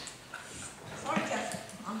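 Indistinct speech in a large chamber: a few faint, unclear words before the answer begins.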